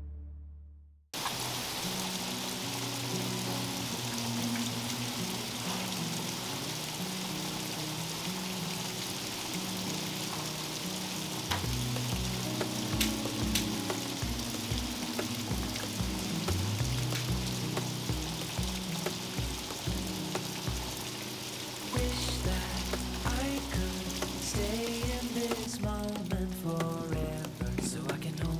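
Steady rain hiss, with background music over it: a soft pulsing beat comes in a little before halfway, and a melody near the end.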